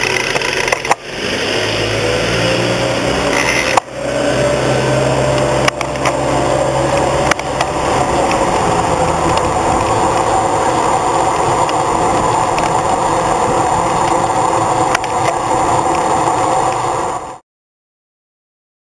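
Traffic noise from a bike-mounted camera: an engine running with a slowly rising tone, then a street sweeper's engine and rotating brush approaching and passing, a dense steady noise. A few sharp clicks are heard, and the sound cuts off suddenly near the end.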